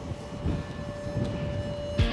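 Wind rumbling on the microphone, with a steady high tone held through it.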